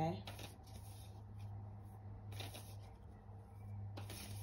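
A tarot card deck being shuffled in short bursts, about half a second in and again about halfway through, over a steady low hum.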